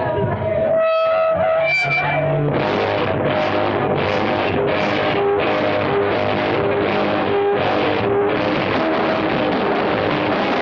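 Punk rock band playing live: a few held, distorted electric guitar notes ring out, then about two and a half seconds in the full band comes in with distorted guitars and a steady beat of about two hits a second.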